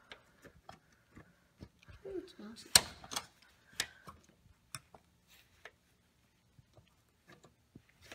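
Steel needle-nose pliers clicking and scraping against a bent cotter pin in a brake rod clevis while trying to straighten it: irregular small metal ticks, the loudest about three seconds in.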